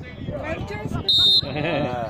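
A referee's whistle blows one short, shrill blast about a second in, among men shouting from the sideline and pitch.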